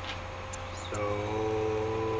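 Low steady hum at first; from about a second in, a man holds one long, level "uhh" at a steady low pitch, a hesitation sound before he speaks again.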